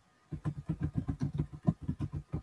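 Computer keyboard being typed on: a quick, even run of keystrokes, about eight a second, starting about a third of a second in.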